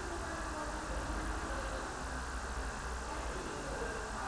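Steady low background hum, even throughout, with no distinct events.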